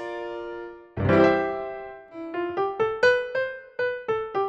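GarageBand's Grand Piano touch instrument on an iPad: a chord ringing and dying away, a second chord struck about a second in, then a quick run of single notes climbing upward from about two seconds in.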